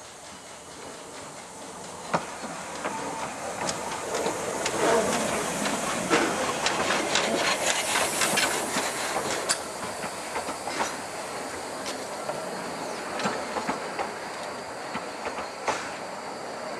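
Narrow-gauge steam tank locomotive approaching and passing close by, growing louder, with a burst of steam hiss as it draws level. Its carriages then roll past, their wheels clicking over the rail joints.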